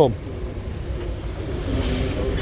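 A car engine idling close by, a steady low rumble.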